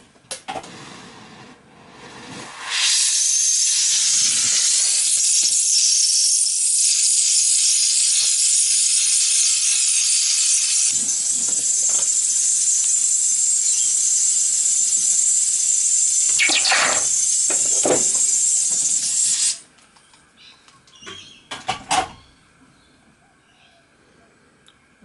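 Gas torch (MAPP gas) burning with a steady hiss while heating a copper boiler end to anneal it. The hiss starts about three seconds in and cuts off abruptly after about seventeen seconds. A few light clicks and knocks follow.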